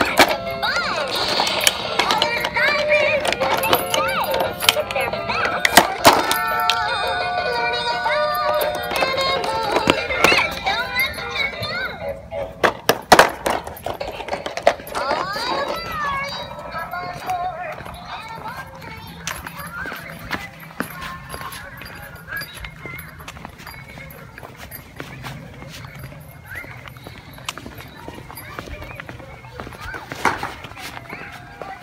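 An electronic baby toy playing its tinny song and voice clips while a dog chews it, with sharp plastic clicks and knocks from the teeth on the toy, loudest about twelve to thirteen seconds in. The toy's sound grows fainter in the second half.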